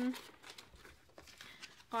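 Faint crinkling and rustling of paper sticker sheets being handled and moved aside, with a few small light clicks.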